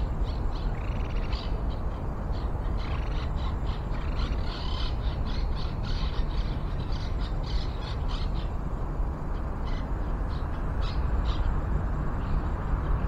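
Wild birds calling: many short, sharp calls throughout, with a couple of longer rasping calls in the first few seconds, over a steady low rumble.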